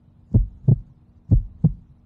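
Heartbeat sound effect: paired low thumps, lub-dub, twice, about a second apart, laid under a countdown for suspense.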